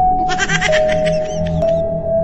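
Background music with a held tone, over which a wavering, bleat-like cry sounds for about a second and a half, typical of a goat bleat sound effect in a comedy skit.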